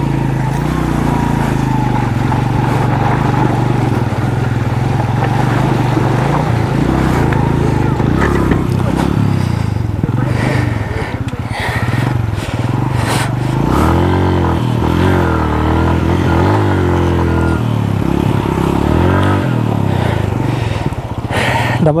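Motorcycle engine running at low speed through a shallow, rocky stream crossing, its note rising and falling again and again in the second half as the throttle is worked over the stones. A few sharp knocks come around the middle.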